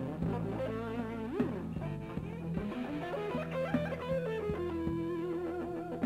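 Electric blues guitar playing a lead line with a string bend about a second and a half in and a long held note near the end, over bass accompaniment.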